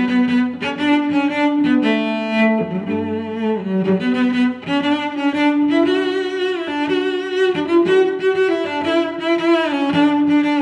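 Background music played on bowed string instruments: a melody of held notes, each lasting about half a second to a second.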